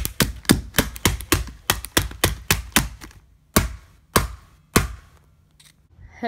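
Repeated hard blows on a Nintendo 3DS handheld console as it is smashed: a fast run of sharp knocks, about four or five a second for nearly three seconds, then three single heavier strikes about half a second apart.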